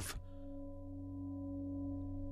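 A sustained musical drone of several steady held tones over a low hum, slowly growing louder: sound-design underscore beneath a stage monologue.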